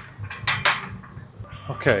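Iron weight plates clinking and rattling on a loaded barbell as the bar is moved through a bent-over row, with a few sharp metallic clinks in the first second.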